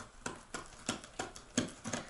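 A cheap kitchen knife sawing and jabbing through packing tape and cardboard on a parcel, a quick irregular series of short sharp scratching strokes.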